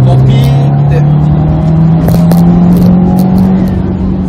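Subaru WRX STI's turbocharged 2.0-litre flat-four engine accelerating hard under boost in 4th gear from low revs, its note rising steadily in pitch and levelling off near the end. Pulling from low rpm in a high gear, the boost overshoots its target and does not come back down, which the driver means to fix in the boost controller settings.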